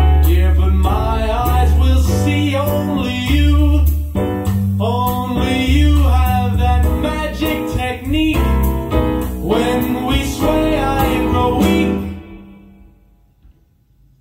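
A recorded song played loud through large hi-fi loudspeakers: a band with a heavy bass line and a melody line that bends in pitch. About twelve seconds in, the music stops and rings away to near silence.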